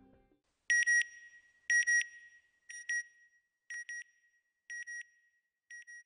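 An electronic double beep, high and pure in pitch, repeating about once a second six times and growing fainter with each repeat, like an echo dying away.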